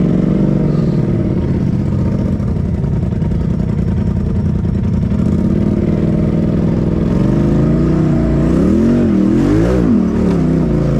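Side-by-side UTV's engine pulling steadily under load as it crawls up a rocky ledge climb, then revved up and down several times in quick succession near the end.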